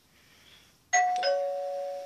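Two-tone doorbell chime: a higher "ding" about a second in, then a lower "dong" a moment later, the two notes ringing out together for about a second.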